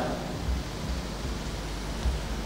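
Steady background hiss of the room and recording, with a couple of faint low bumps.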